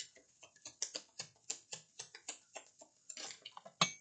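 A deck of tarot cards being shuffled by hand: a quick run of light card clicks, about four to five a second, with one louder click near the end as a card is pulled from the deck.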